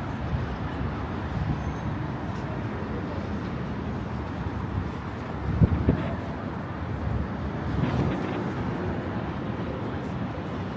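City street traffic: a steady low rumble of passing vehicles, swelling louder about five and a half seconds in as one passes close.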